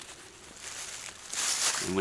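Fabric rustling as a packed bug net and its stuff sack are handled, growing louder through the second half.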